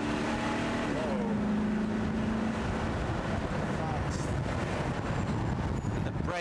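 Car engine and road noise heard from inside the cabin as the car speeds up. The engine hum steps down in pitch about a second in, then holds steady before fading into the road and wind noise.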